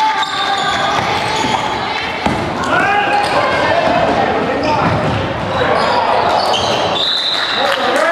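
Several voices calling out over one another in a large gymnasium hall, with a basketball bouncing on the wooden court floor.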